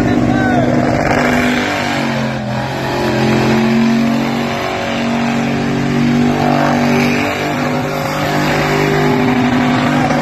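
A Ford Cortina's engine held at high revs during a burnout, its pitch wavering up and down as the throttle is worked, over the noise of the rear tyres spinning on the pavement.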